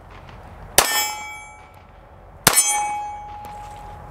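Two .380 ACP shots from a Walther PD380 pistol, about a second and a half apart, each followed by the ringing clang of a hit steel target. The second ring lingers as a single steady tone.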